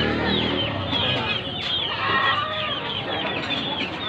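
Chickens clucking, with many short high calls overlapping one another over steady market noise.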